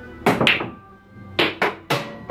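A pool shot: the cue strikes the cue ball with a sharp knock, then balls clack against each other and the table, five knocks in all, with a quiet gap in the middle. A hip-hop instrumental plays underneath.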